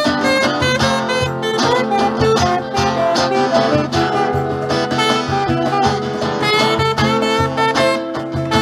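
Live blues band playing an instrumental passage: a saxophone plays a melody over strummed acoustic guitars, with a cajón keeping a steady beat.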